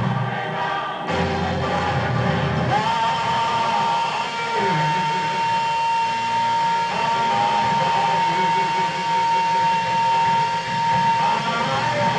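Gospel choir singing in a church, with a single high note held steady through most of the middle.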